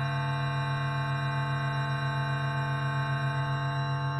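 Drone music: one sustained low note held unchanging, with many steady overtones above it and a slight regular wavering in loudness.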